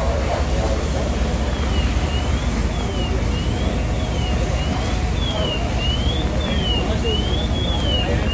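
Steady low rumble of fire apparatus engines running at a working fire. From about a second and a half in, a high electronic alarm tone sweeps up and down, a little faster than once a second.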